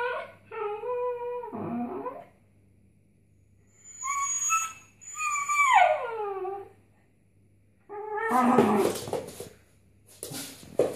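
A dog whining and howling in four drawn-out calls with short pauses between them, the third sliding down in pitch.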